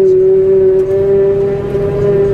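Claas Jaguar 950 forage harvester working, heard from inside its cab: a loud, steady machine whine held on one pitch over a low rumble as it picks up a grass swath.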